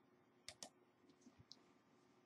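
Near silence with two faint clicks close together about half a second in, then a few fainter ticks: a computer mouse being clicked.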